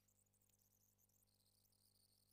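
Near silence: only a faint steady hum and hiss.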